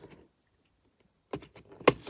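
Near silence, then plastic video cases clicking and scraping against each other as one is slid out of a packed shelf, with a sharp click near the end.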